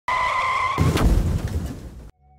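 Intro sound effect of car tyres screeching, a steady high squeal that gives way under a second in to a loud low car rumble, which fades away toward the end.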